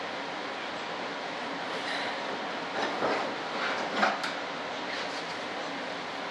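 Steady shop background noise, with a few short knocks and rustles about three and four seconds in as parts are handled inside a model jet's fibreglass fuselage.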